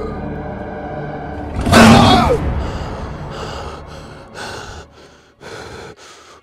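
A person's loud gasping cry about two seconds in, its pitch falling, followed by a series of short heavy breaths about a second apart.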